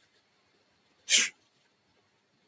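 A single short, sharp exhalation from a person, about a second in, with silence around it.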